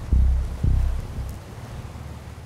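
Wind buffeting the microphone in a few loud low gusts in the first second, over the steady low rumble of a sportfishing boat under way.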